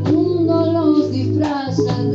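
Live band music: a woman sings the end of a line in Spanish, holding the last note, over a bass guitar and drum kit, with a couple of drum and cymbal strokes.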